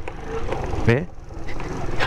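Small scooter's engine running on a rough dirt street, with the ignition key rattling in its lock: the key is the source of the nagging noise the rider was tracking down.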